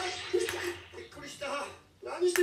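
Faint short snatches of a voice over a low noisy hiss, dropping out just before the end.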